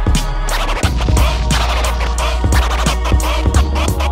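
A vinyl record scratched back and forth by hand on a Technics turntable and chopped with the DJ mixer's crossfader, giving quick rising and falling scratch glides that thicken about half a second in. A hip-hop beat with a regular kick drum plays underneath.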